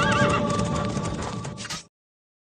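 Background music with a horse's whinny near the start and hoofbeats under it. The sound fades and then cuts off sharply just before the end.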